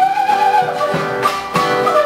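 Live Andean folk music: a fiddle and a wind instrument carry a sustained, sliding melody over regular beats of a large stick-beaten drum.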